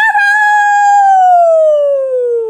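A woman's voice drawn out into one long, high "ooo" in a mock howl, held for about a second and then sliding slowly down in pitch.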